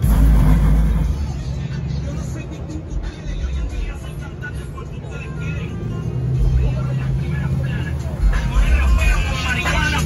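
Car engines running as vehicles drive slowly across a parking lot, a low steady hum that gets louder near the end as one passes close. Music and voices in the background.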